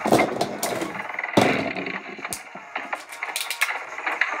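Beyblade spinning tops clashing and scraping against each other and the plastic stadium: a dense run of irregular clacks and knocks, loudest at the start and again about a second and a half in.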